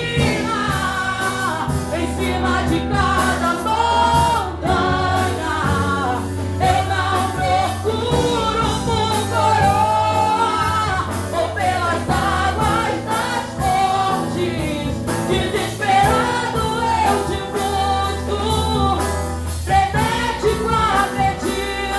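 A woman singing a Portuguese gospel worship song through a handheld microphone and PA, her melody gliding and held on long notes over a steady low bass accompaniment.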